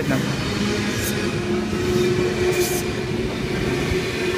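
Sydney Trains K-set double-deck electric train pulling out and passing close by: a steady rumble of wheels and running gear with a low hum, and a couple of brief high hisses partway through.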